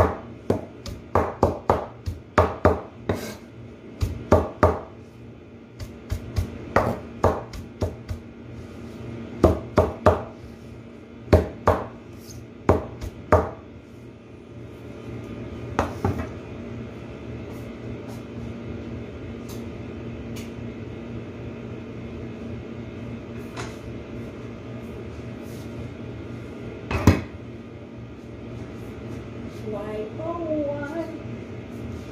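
A wide-bladed kitchen knife chopping a pile of jute mallow (saluyot) leaves on a cutting board: quick, irregular chops for about the first half, then a quiet stretch with one loud chop near the end.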